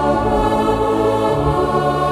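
Electronic arranger keyboard playing a slow hymn in held, sustained chords, with the bass moving to a new note about a second and a half in.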